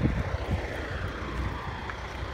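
A steady low engine rumble from a distant vehicle, under a faint even hiss.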